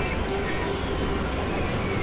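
Experimental electronic noise-drone music: a dense, unbroken wash of noise over a low rumble, with a faint held tone.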